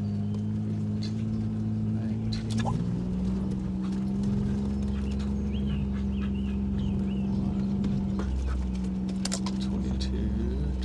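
Utility vehicle engine running steadily, a low even hum heard from inside the cab, with a few light clicks.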